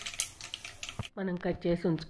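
Tempering of dals, cumin seeds and dried red chillies crackling in hot oil in a kadai: a rapid patter of small pops that cuts off suddenly about a second in.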